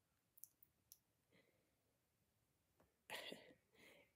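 Near silence: room tone, with two faint small clicks about half a second and a second in, then a short breath near the end just before speech resumes.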